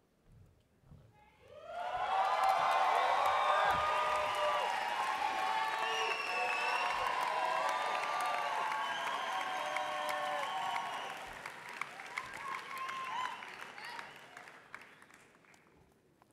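A large audience applauding and cheering, with shouts and whoops over the clapping. It swells up quickly about a second and a half in and dies away near the end.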